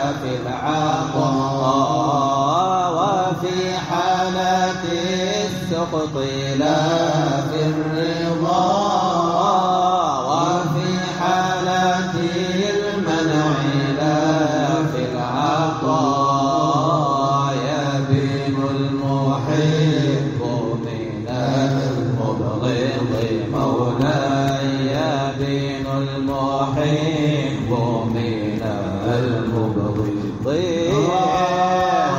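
Men's voices in a slow, drawn-out Sufi devotional chant (inshad). Long held notes sit low beneath a wavering, ornamented melody.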